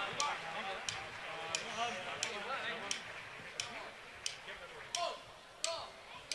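Steady, evenly spaced ticks, about three every two seconds, keeping time before a murga's drums and singing start; faint crowd voices murmur underneath.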